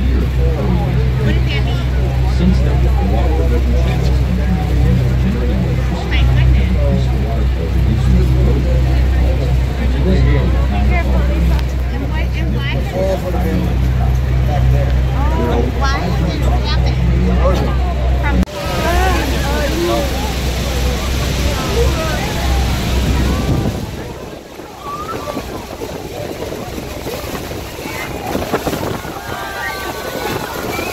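Tour boat's engine running with a steady low hum under passengers' chatter. Partway through, a loud rushing of the waterfall and wind takes over, the engine hum drops away, and voices carry on.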